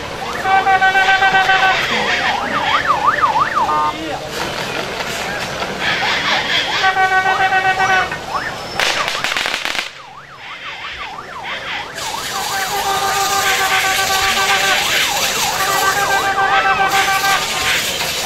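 A siren-like electronic horn sounding in repeated bursts over crowd noise. Each burst holds a steady tone and then switches to a fast up-and-down warble; the bursts come near the start, around seven seconds in, and again from about twelve to seventeen seconds.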